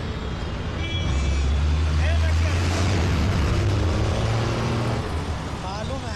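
Busy city traffic: a low, steady rumble of bus and car engines, with voices in the background.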